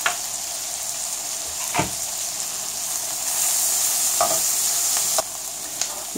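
Bacon, red pepper and spring onion frying in a pan, a steady sizzle that swells in the middle and drops abruptly about five seconds in. A few sharp knocks of a knife chopping basil on a plastic cutting board.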